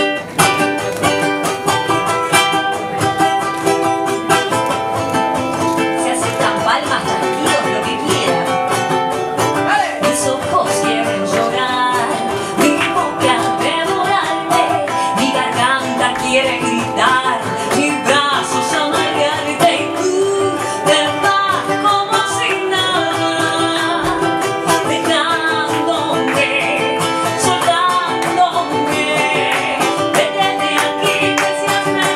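Ukulele played with a woman singing a slow, heartbroken song over it.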